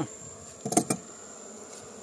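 Honeybees buzzing around a hive entrance, with a thin steady high-pitched tone behind them. A short, louder scuffing rustle comes a little under a second in.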